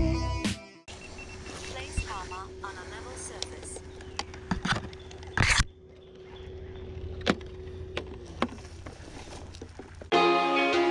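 Background music cuts off about a second in. Then plastic clicks and handling sounds as a folding drone is packed into its carry case, over a steady low hum, with one louder rustling burst just past the middle.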